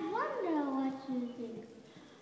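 A group of children's voices reciting together in a sing-song chant, their pitch gliding up and down. The voices trail off to a brief lull near the end.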